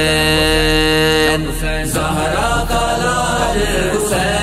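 Male voice singing a Muharram manqabat (Urdu devotional song) over a steady low drone: one long held note for about the first second and a half, then a wavering, ornamented melodic line.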